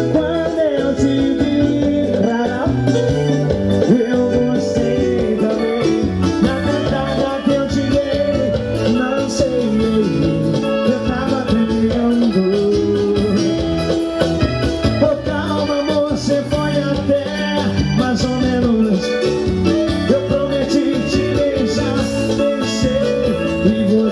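Live band music played loud through a stage PA, with a steady beat under a continuous melody line.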